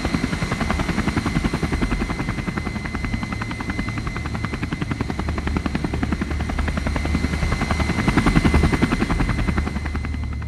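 Attack helicopter: fast, even chop of the rotor blades over a steady high turbine whine, growing a little louder near the end.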